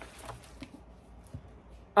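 Faint paper rustling and a few soft taps as a paper dust jacket is slid off a hardcover book.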